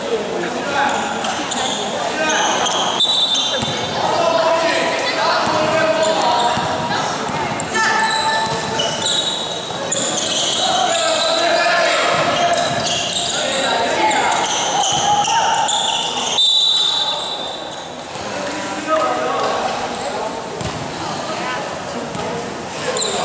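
A basketball being dribbled and bounced on a gym court, with players and onlookers calling out over it, echoing in a large indoor gymnasium.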